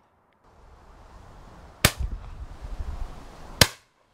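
Two shotgun shots from an over-and-under shotgun fired at a clay target, about a second and three quarters apart, the second ringing on briefly. A low rumble runs under and between the shots.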